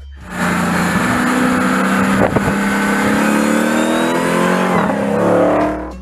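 Dodge Challenger's Hemi V8 accelerating hard on a track, its pitch climbing steadily for several seconds with a short dip near the end.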